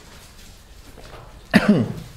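A man coughing once near the end, a short voiced cough falling in pitch, after a moment of quiet room tone.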